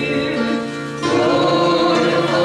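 Congregation singing a hymn together in held notes; the singing eases briefly and the next phrase starts about a second in.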